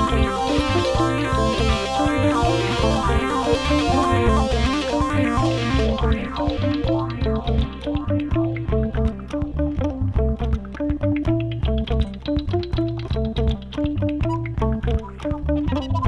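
Amplified electro-acoustic hurdy-gurdy, cranked and played in a fast rhythmic instrumental tune over a steady low pulse. About six seconds in, the bright top of the sound drops away, leaving a darker tone.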